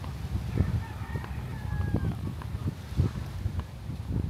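A rooster crowing once, a drawn-out call that rises and then falls away, starting about half a second in. Beneath it, a low rumble of wind on the microphone.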